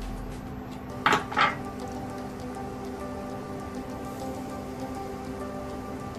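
Granulated sugar poured from a cup into a pan of water, a faint soft patter of grains, over steady background music. Two short louder sounds come about a second in.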